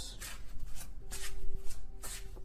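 Tarot cards shuffled by hand: a run of quick papery riffles and slides, a few strokes a second.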